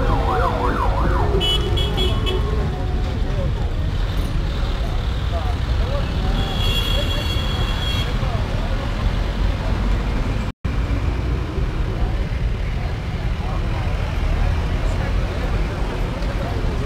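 A group of motorcycles running at a roadside, a low steady rumble throughout. Two short high tones cut in, about two and seven seconds in. The sound drops out for a moment about ten and a half seconds in.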